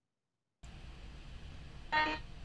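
Video-call audio cuts out completely for about half a second, then faint room noise from the call's microphone comes back, and a man's voice starts right at the end.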